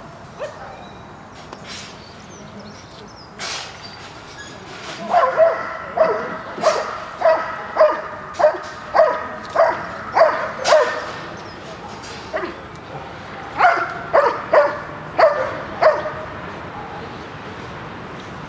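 A dog giving a long run of short, high-pitched yipping barks, about two a second for some six seconds, then a second quicker burst of five or six after a brief pause.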